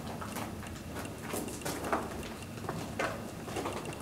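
A handful of short, soft clicks and knocks at uneven intervals over a steady hiss of background noise.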